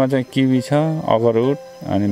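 A man's voice talking over a steady, high-pitched chirring of insects.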